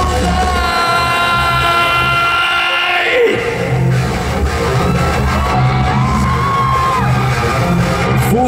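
Live rock band playing loud, with electric guitar, bass and drums. A long held note sounds over the band in the first three seconds and drops in pitch around three seconds in; a shorter held note comes later.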